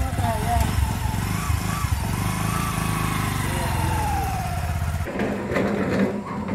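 Small motorcycle engine running, a steady low pulsing, under voices; about five seconds in the sound cuts abruptly to a different, quieter scene.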